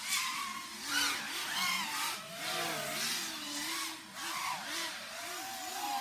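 Karearea Talon V2 5-inch racing quadcopter on 6S with Dalprop Spitfire props, its motors and propellers whining in flight, the pitch rising and falling repeatedly with throttle changes.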